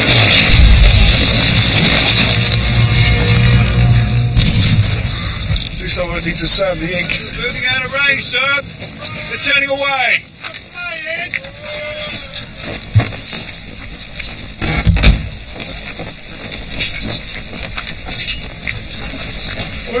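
Muzzle-loading cannon fire: a heavy rumbling blast in the first few seconds. It is followed by men yelling over one another, then two sharp bangs about two seconds apart.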